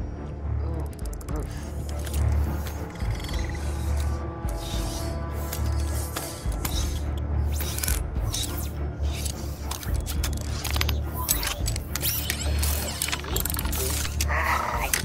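Film soundtrack: music score over a steady low drone, with rapid mechanical clicking, ratcheting and whirring of a small robot scrambling through metal server racks.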